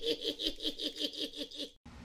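A woman laughing in a fast, even run of high-pitched pulses, about seven a second. The laugh cuts off suddenly near the end.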